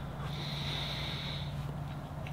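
A person breathing out through the nose: a soft hiss lasting about a second and a half, over a steady low electrical hum.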